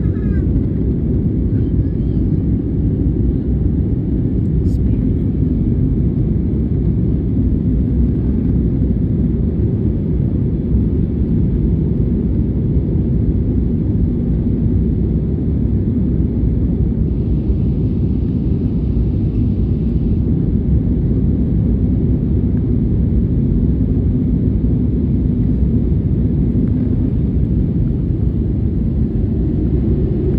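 Steady, loud, low rumble of an airplane in flight, the engine and air noise heard from inside the passenger cabin.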